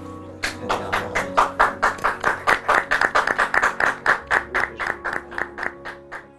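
Hands clapping in a quick, even rhythm of about five claps a second, starting about half a second in and stopping near the end, over background music.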